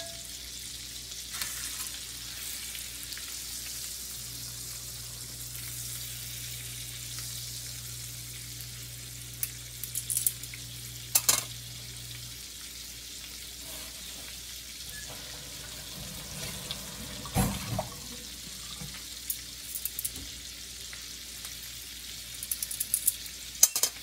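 Salmon fillets frying in melted butter in a nonstick pan: a steady sizzle, broken by a few sharp clicks and knocks about ten, eleven and seventeen seconds in and again near the end.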